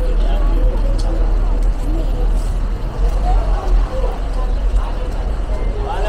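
Busy street ambience: a steady low rumble of vehicle traffic under indistinct chatter of people nearby.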